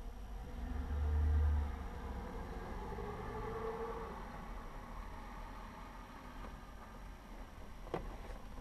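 Low vehicle rumble heard inside a parked SUV's cabin, swelling for about a second near the start, with a sharp click at the very end.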